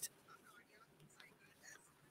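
Near silence: a pause between spoken sentences, with only faint room tone.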